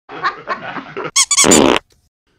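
High-pitched squeaks: three short ones, each rising and falling in pitch, in the second half, after about a second of lower, rougher noise.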